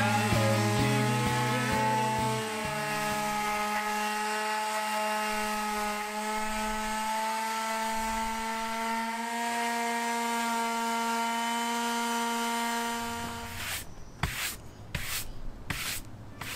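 DeWalt palm sander running steadily as it sands a plywood board, its motor giving a constant hum under the scratch of sandpaper on wood. It stops near the end, and short brisk strokes follow as a hand brush sweeps the sanding dust off the board.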